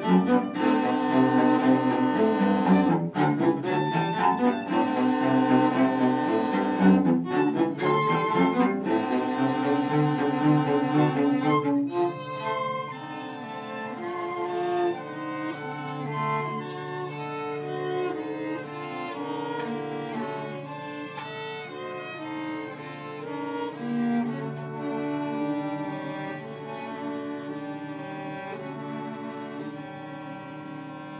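String quartet playing, the bowed instruments sounding together; the music drops to a softer passage about twelve seconds in.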